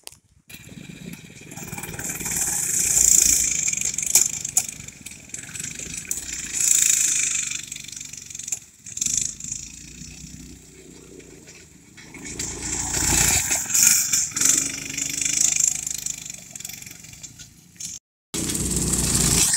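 Small gasoline engines of a go-kart, a four-wheeler and a mini bike running on a lawn, the noise swelling and fading several times as they move about.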